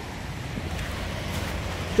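Steady wind and sea surf noise, an even rush heaviest in the low end, picked up by a smartphone's built-in microphone.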